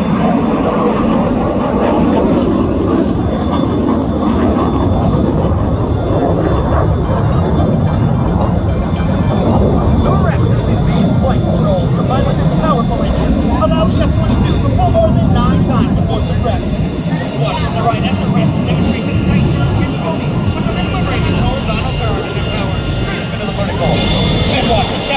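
Loud, steady rush of an F-22 Raptor's twin Pratt & Whitney F119 turbofan jet engines as it flies an airshow display, with crowd voices underneath.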